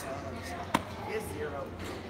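A single sharp click of a pool ball strike at the table, about three-quarters of a second in, with faint chatter echoing in a large hall around it.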